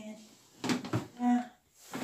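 Plastic parts of a Matsui front-loading washing machine being handled, the door shut and the detergent drawer pulled open: a short rattling clatter about two-thirds of a second in, and a sharp click near the end. A brief hum of voice falls between them.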